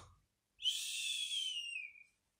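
A person whistling one long, slowly falling note through the lips, starting about half a second in: the whistled out-breath of a comic, cartoon-style pretend snore imitating sleep.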